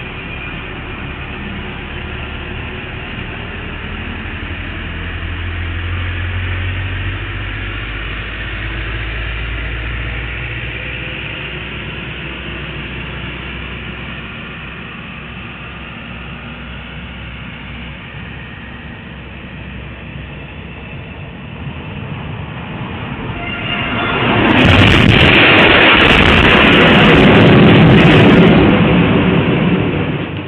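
Low rumble of traffic engines on a street, heard through a security camera's microphone, then about 24 seconds in a tractor-trailer arrives at high speed and crashes: a sudden, very loud rush of noise with sharp crashing impacts for about six seconds, falling away sharply at the end.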